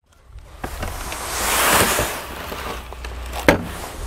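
Damp sand sliding and pouring out of a tipped plastic wheelbarrow tub onto concrete: a rushing hiss that swells to its loudest about two seconds in, then eases, over a low rumble. A sharp knock sounds near the end.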